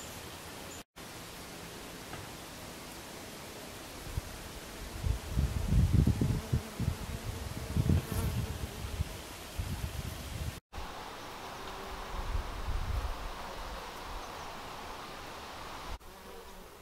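Flying insects buzzing around flowers over a steady outdoor hiss, with louder, irregular buzzes in the middle as they pass close to the microphone.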